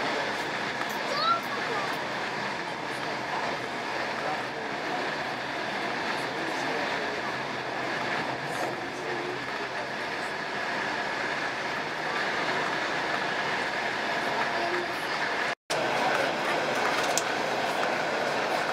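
Steady running noise of a moving passenger train, heard from inside the carriage. The sound cuts out for a moment about three-quarters of the way through.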